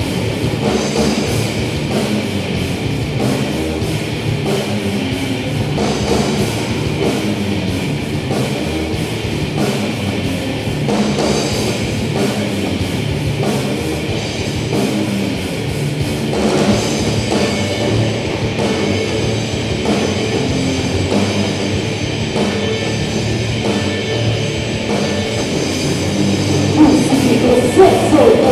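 Live heavy metal band playing an instrumental passage: distorted electric guitars, bass guitar and a drum kit at a steady driving beat, with no vocals.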